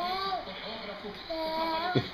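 A young girl's voice singing two drawn-out, wavering notes, one at the start and one near the end.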